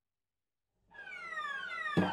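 Dead silence for about the first second, then an electronic sweep of several tones gliding downward together, growing louder, as the outro music begins.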